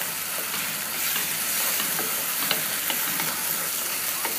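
Bean seeds and onion masala sizzling in oil in a pan while a wooden spatula stirs them, with frequent light scrapes and taps of the spatula against the pan.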